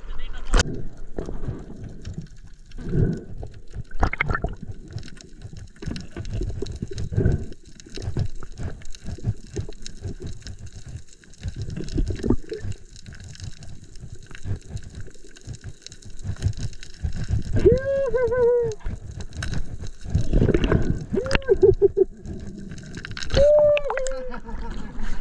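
Water sloshing and gurgling around an action camera moving at and below the sea surface, with irregular knocks. A few short voice-like calls come in the last third.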